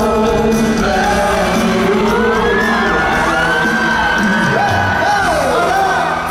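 Live pop music from a band, with several singers singing together in turn, including one long held high note in the middle. The audience cheers and whoops over it.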